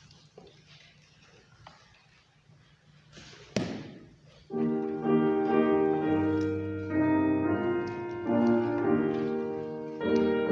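Hymn introduction played on a keyboard instrument: held chords begin about four and a half seconds in and continue, changing every second or so. A single sharp knock comes a second before the music, and before that only faint room noise.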